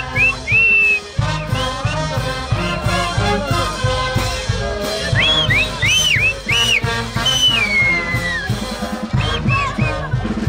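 Brass band playing a huaylash with a steady pulsing bass beat, over which dancers give short rising-and-falling whistles in quick runs, and one long whistle falling in pitch about seven seconds in.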